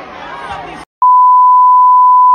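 Voices shouting over crowd noise cut off abruptly just before a second in. About a second in, a steady, loud, high-pitched censor bleep starts and holds, masking a swear word.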